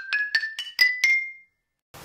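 A short jingle of bright, bell-like struck notes, like a glockenspiel or tapped glass, climbing steadily in pitch at about five notes a second. The top note rings out a little after a second in.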